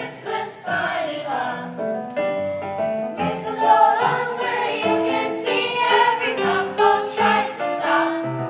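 Middle school chorus of young voices singing a Christmas carol together, a line with changing sustained notes.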